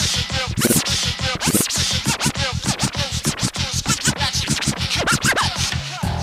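Vinyl scratching on a turntable: a record pushed back and forth under the stylus, making quick rising and falling pitch sweeps, chopped short by the mixer's crossfader, over a steady backing beat.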